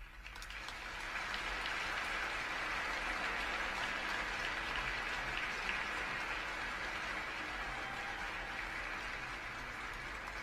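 Audience applauding at the end of a figure skating program, swelling over the first second or two and then holding steady.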